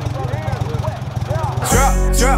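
A small boat motor idling with a rapid low putter under rapped vocals. About three-quarters of the way in, a loud hip-hop beat with heavy bass comes in over it.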